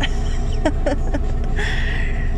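Steady low rumble of a bus's engine running, heard from inside the passenger cabin, with a short laugh about halfway through and a brief hiss near the end.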